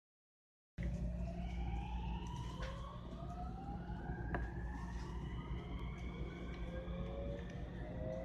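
Electric train's inverter-driven traction motors whining as it accelerates: several tones rise steadily in pitch over a low rumble of the running gear, starting about a second in. A fresh set of rising tones begins near the end, and there are a couple of sharp clicks.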